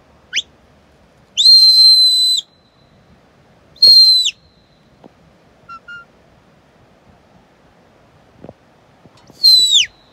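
A shepherd whistling commands to a working sheepdog. A short rising whistle comes first, then a long steady high whistle, a shorter one about four seconds in that drops at its end, and a falling whistle near the end.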